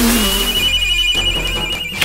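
Large hanging brass bell struck and ringing, one sustained high tone that stops near the end.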